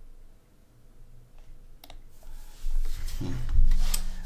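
A single click at a computer desk just before halfway, then a man's breathy exhale into the microphone with a short low hum of the voice near the end.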